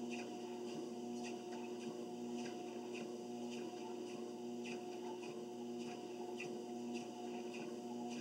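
Quiet, steady electric hum from a running treadmill motor.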